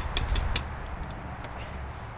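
Metal hive tool tapping and scraping a plastic grid propolis trap to knock the cold, brittle propolis out. There are a few sharp clicks in the first half-second, then fainter scattered ticks.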